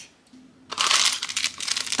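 Crinkly plastic wrapper of a small toy packet being handled, starting a little under a second in and running on as a dense crackle.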